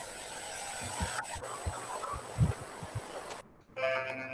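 Background noise from an open microphone on a video call: a steady hiss with a few soft low thumps, then the line drops almost to silence for a moment near the end.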